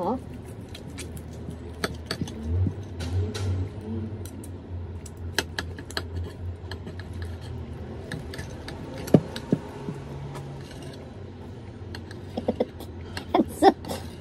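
Knife and fork scraping and clicking against a plate while cutting through grilled pork belly, with scattered small sharp taps and one louder clack about nine seconds in.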